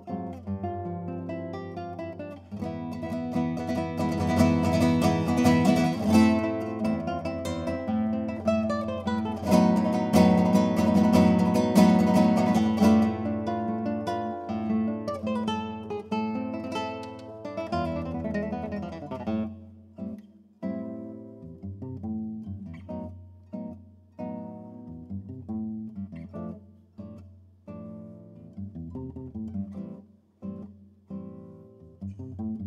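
Classical nylon-string guitar played solo: a loud, dense run of rapid chords swells through the first half, then the playing thins to quieter, separate plucked notes.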